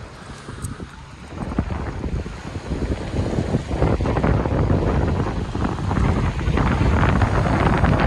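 Wind buffeting the microphone, getting stronger from about two seconds in, over small waves lapping and breaking on a pebble shore.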